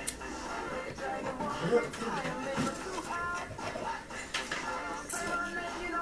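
Pop music with singing, playing from a radio in the room. A few light knocks sound over it.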